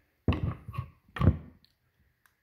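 Two dull thuds about a second apart, the second louder: a Yellow Jacket Titan digital refrigerant manifold gauge being set down and knocked against a tabletop.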